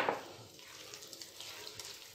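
Faint, soft rustling of a hand working crumbly cookie dough with ground peanuts and sesame seeds in a glass bowl.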